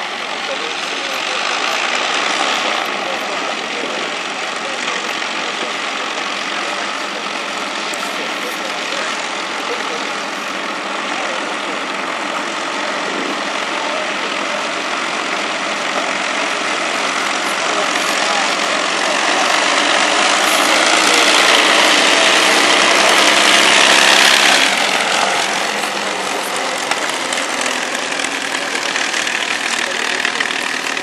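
Avro Lancaster's four Rolls-Royce Merlin V12 engines running as the bomber taxies up and past, a dense propeller-and-engine drone. It grows louder toward a peak about three-quarters of the way through, then drops off sharply.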